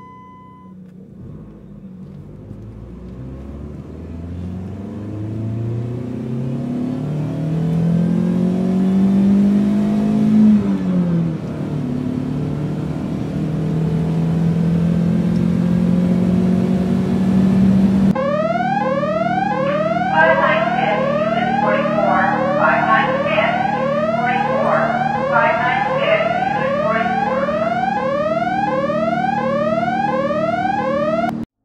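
Added electronic sound: a short steady beep ends within the first second, then a low drone climbs in pitch for about ten seconds, dips and holds level. About eighteen seconds in it cuts abruptly to quick rising sweeps, about two a second, over a steady drone.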